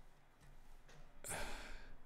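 A man sighs once: a short breathy exhale of about half a second, about a second and a quarter in.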